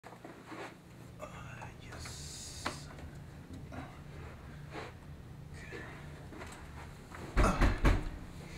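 A person dropping heavily onto a leather sofa near the end, a loud thump with cushion creak, over a steady low room hum. A short hiss sounds about two seconds in.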